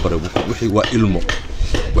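A man's voice talking, with several sharp clicks and clinks among the words.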